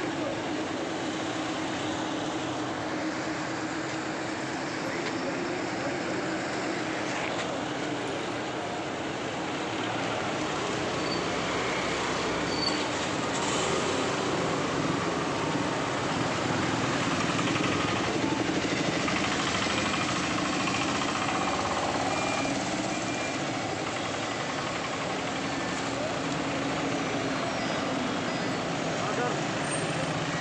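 A slow convoy of cars and SUVs drives past close by, engines running. Indistinct voices of people talk underneath, with no single loud event.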